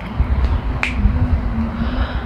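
A single sharp finger snap a little under a second in, over a steady low background rumble.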